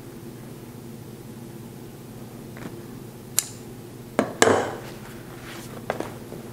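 A few sharp clicks and knocks from handling a leather stool cover and its tools on a work table, the loudest a close pair about four seconds in, over a steady low hum.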